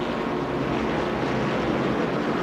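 Engines of several open-wheel modified race cars running at full speed in a pack, a steady roar as heard on the broadcast's track audio.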